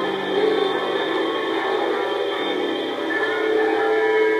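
Classical acoustic guitar being played: strummed chords left ringing, with the low notes changing and new notes coming in a little past halfway through.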